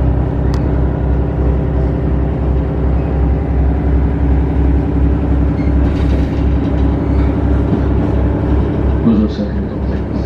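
Diesel railcar engine idling at a station stop, a steady low rumble with a regular pulse, heard from inside the car.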